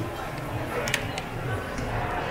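Busy shopping-hall ambience: a steady background murmur of many shoppers' voices with faint music, and a couple of light clicks about a second in.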